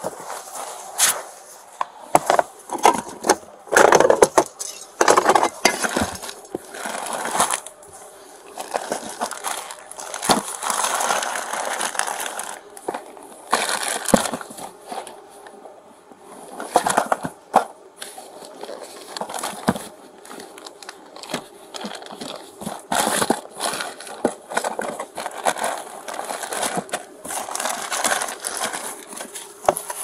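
Irregular rustling, crackling and knocking as a gloved hand rummages through clothing, plastic packaging and cardboard boxes on a vehicle's back seat during a search.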